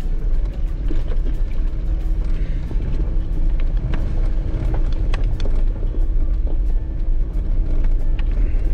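Jeep Wrangler Rubicon crawling over a loose rocky trail: a steady low engine and drivetrain rumble with frequent knocks and rattles as the heavily loaded rig is shaken by the rocks.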